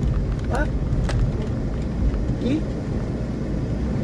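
Steady low engine and road rumble inside a moving car's cabin, with a single sharp click about a second in.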